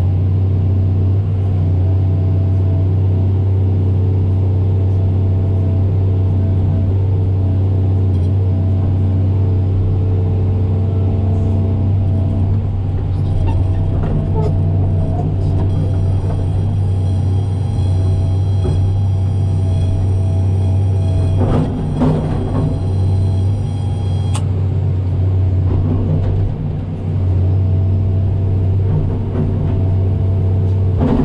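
Excavator diesel engine running steadily, heard as a deep drone inside the cab. A steady high-pitched tone joins it about halfway through and cuts off suddenly some eleven seconds later.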